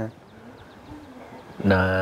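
A brief lull in which a faint, low bird coo is heard about a second in. Then a man's voice holds one long, level drawn-out vowel near the end, a hesitation sound.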